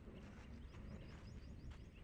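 Very faint outdoor background: a low steady rumble with a series of faint, short, rising high chirps from a bird calling in the distance.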